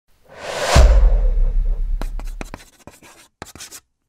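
Title sound effects: a whoosh swelling into a deep boom that rumbles away, followed by a quick series of short chalk-on-chalkboard scratches as the lettering is written.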